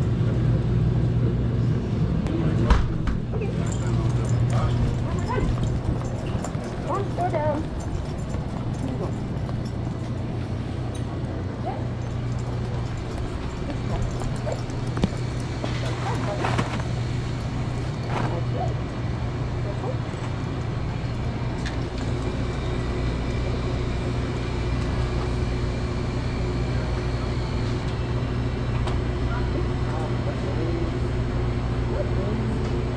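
Grocery store background noise: a steady low hum with faint voices in the background and occasional knocks, the sharpest about three seconds in.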